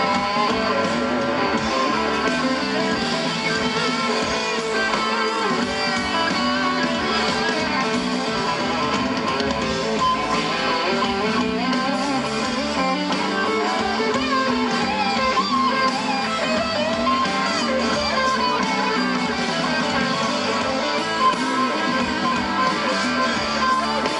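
Live rock band playing an instrumental passage led by electric guitars, with strummed chords under lead guitar lines.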